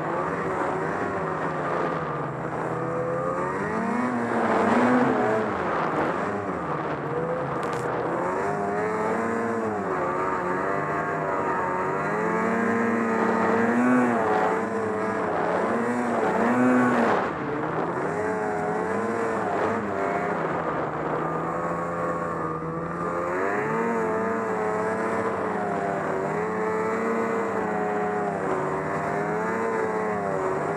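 Ski-Doo Summit XM snowmobile engine running under load through deep powder, its pitch rising and falling continually with the throttle. The strongest surges come about 4, 14 and 17 seconds in, and the engine speed drops sharply just after the last one.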